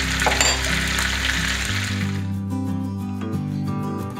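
Butter foaming and sizzling around potato halves frying in a cast-iron skillet, under background guitar music; the sizzle drops away a little past halfway, leaving the music.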